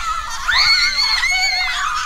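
Several children screaming and shrieking in play, high-pitched voices overlapping, with one long held scream from about half a second in until near the end.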